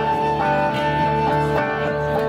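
Live song accompaniment on guitars, strummed steadily, with one long held melody note over the strumming.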